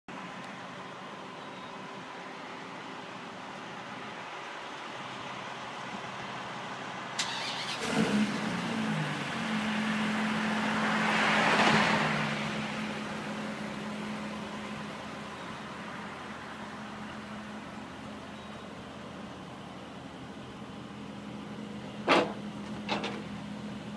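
A car passing on the road, swelling and fading a few seconds before the middle, over steady outdoor background noise. A couple of knocks come just before it, and a steady low hum sets in about eight seconds in.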